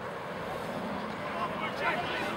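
Indistinct distant voices and calls of rugby players and spectators over a steady outdoor hiss, with no clear words.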